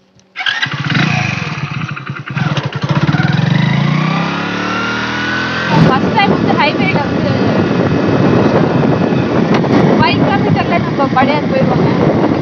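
Single-cylinder Hero Splendor motorcycle engine on the move. It comes in suddenly and rises in pitch as the bike pulls away, then runs on steadily with wind rush from about six seconds in.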